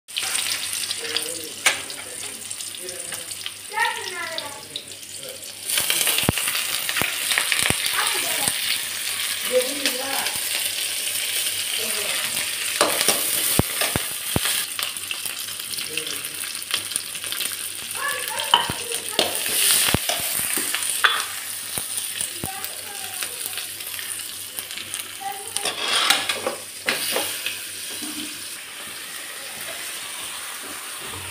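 Sliced onions and green chillies frying in hot oil in a metal wok, sizzling steadily, with the sizzle getting louder about six seconds in. A steel spoon stirs and scrapes through them, clinking sharply against the pan now and then.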